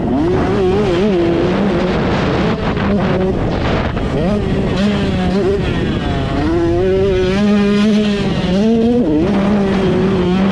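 KTM 125SX single-cylinder two-stroke motocross engine run hard, its pitch climbing and falling again and again with throttle and gear changes. It holds its highest note for a couple of seconds late on, then drops sharply and climbs again.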